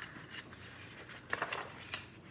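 Quiet handling of a paperback picture book as it is flipped and turned, with a brief rustle of paper and cover about a second and a half in and small clicks at the start and near the end.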